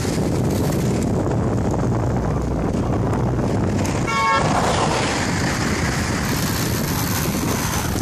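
Wind rushing over the microphone, with the road noise of a moving group of road bicycles. A brief, high-pitched toot sounds about four seconds in.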